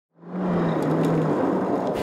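A car driving fast on a dirt road. A steady engine note drops slightly in pitch and fades after about a second, over a loud rushing of tyres on loose gravel.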